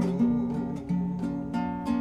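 Classical guitar strummed, a chord struck roughly every half second and left to ring.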